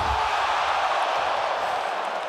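Large arena crowd cheering, a loud even wash of many voices that eases slightly near the end.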